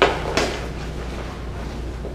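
Two sharp knocks about half a second apart: lightsaber blades striking each other as one fighter intercepts the other's attack.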